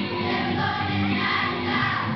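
Children's choir singing a song, steady and continuous, with held notes changing every half second or so.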